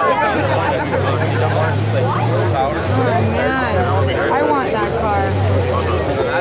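Low engine note of a lifted mud-bog car, revved in several surges, the first about two seconds long, under the chatter of a watching crowd.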